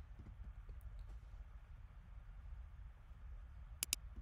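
Quiet room tone with a low steady hum, then two quick computer mouse clicks close together near the end.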